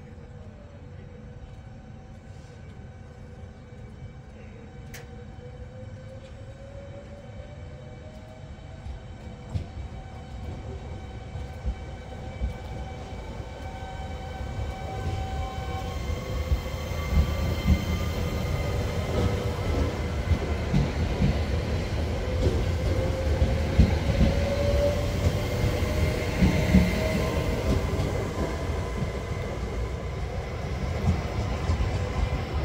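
Two coupled Alstom Coradia Stream 'Pop' ETR103 electric trains pulling away. The electric drive whines, rising steadily in pitch as they gather speed. The sound grows louder as they pass close by, with a rumble and sharp wheel clacks over the rail joints and points.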